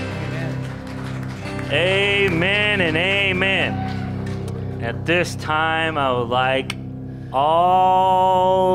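Live church worship music: a sustained chord held under short vocal phrases, with a long held sung note near the end, accompanied by acoustic guitar.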